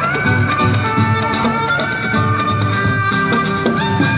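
Đàn nhị (Vietnamese two-string fiddle) playing a sliding, sustained melody over amplified accompaniment with a steady low beat.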